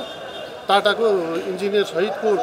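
A man speaking, resuming after a brief pause near the start.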